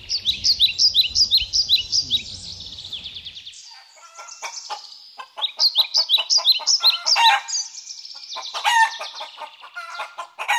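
Bird calls: a fast run of high, falling chirps, several a second, over outdoor background rumble. About three and a half seconds in, the background cuts off abruptly and a series of lower, harsher calls follows, running into the end.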